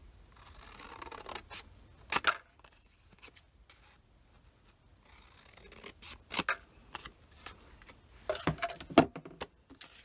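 Long shears snipping through black cardstock: a few crisp cuts, about two seconds in, six seconds in and near the end, with paper rustling and sliding between them.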